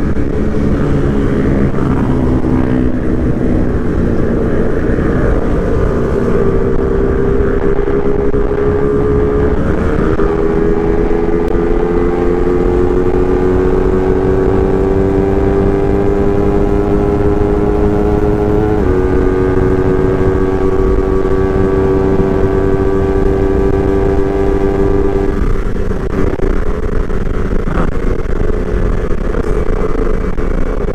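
Motorcycle engine running under steady acceleration at highway speed, its note climbing slowly with two brief breaks, about a third and two-thirds of the way through, and dropping away near the end. Wind rushes over the handlebar-mounted microphone throughout.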